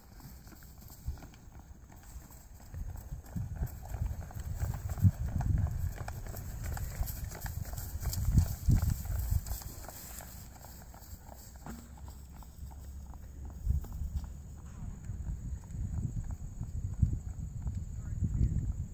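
Hoofbeats of a young thoroughbred gelding ridden at the canter over grass: dull, irregular thuds, louder at times as the horse passes nearer, over a low rumble of wind on the microphone.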